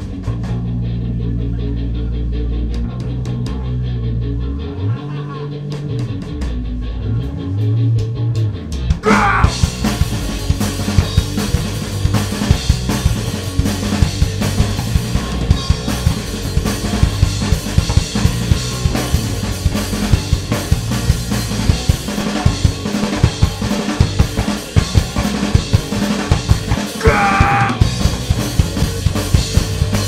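Hardcore punk band playing live, loud. For about the first nine seconds mostly low bass notes sound, then the full band crashes in with fast, dense drumming, cymbals and distorted guitars.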